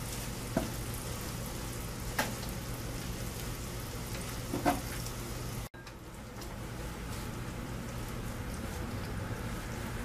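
Bacon sizzling in its rendered fat on a hot baking sheet in the oven: a steady hiss with a few faint ticks and a brief break about halfway through.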